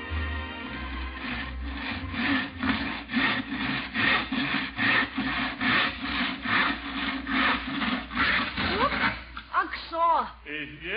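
Hand saw cutting wood in steady back-and-forth strokes, about two a second, as a radio sound effect. The sawing stops near the end as a voice begins.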